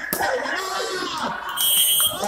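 Referee's whistle: one short, shrill, steady blast near the end, signalling the end of a volleyball rally. Before it, voices call out over the crowd.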